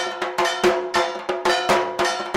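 Drum strokes with a ringing, struck metal bell, beating in a quick, uneven rhythm of about five strikes a second.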